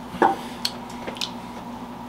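A small glass tumbler set down on a wooden tabletop with a short knock, followed by a few faint clicks, over a steady room hum.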